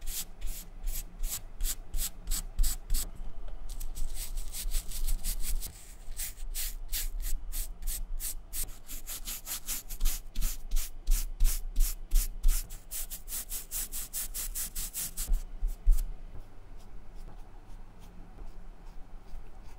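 Stiff synthetic-bristle brush scrubbing dye into the suede toe of a New Balance 773 running shoe: quick scratchy back-and-forth strokes, about four a second, with a short break a little after three seconds in. The strokes stop about two seconds before the end.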